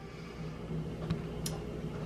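Quiet room tone with a faint steady low hum and two small ticks, a little after a second in and again about half a second later.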